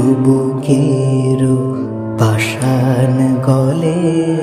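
Devotional kirtan on the name of Krishna: a steady held drone under a wavering melodic line.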